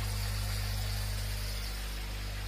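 Steady low mains-frequency hum from running aquarium pumps and filters, with a faint even hiss over it.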